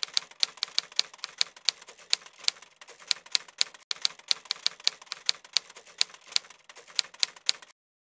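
Typewriter-style typing sound effect: a fast, uneven run of sharp key clicks, about five or six a second, that stops shortly before the end.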